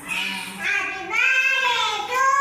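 A high-pitched voice singing long held notes that slide slightly in pitch and grow louder about halfway through.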